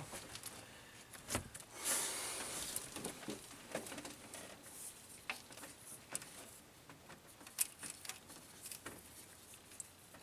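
Faint, scattered light clicks and rattles of a steel timing chain being handled and worked onto the crankshaft sprocket of a Hemi V8 by gloved hands, with a sharper click about a second and a half in and another near 7.5 s.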